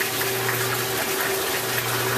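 Steady rushing of running water with a low hum under it, like water moving through household plumbing or a pump.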